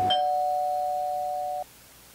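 Electronic doorbell tone: two steady notes sounding together, slowly fading, then cut off suddenly about one and a half seconds in, leaving a faint hiss.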